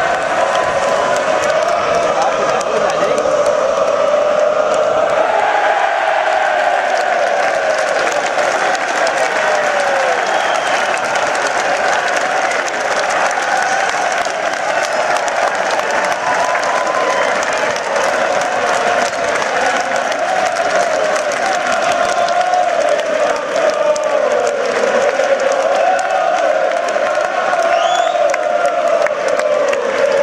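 Football supporters chanting and singing together, with applause and cheering running through it.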